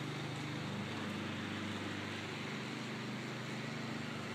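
Steady low hum of a running motor or engine, even and unchanging.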